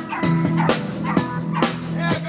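Live band playing, with a drum kit keeping a steady beat of about two hits a second over a bass line, and short high bending notes over the top.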